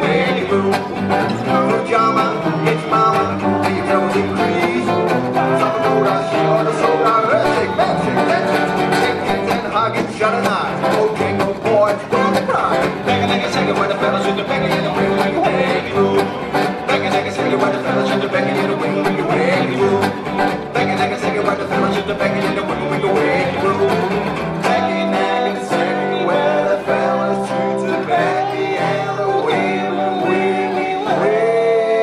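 Live gypsy jazz played by a trio: two Selmer-Maccaferri-style acoustic guitars, lead and rhythm, over a plucked upright double bass. A man's voice sings over it near the end.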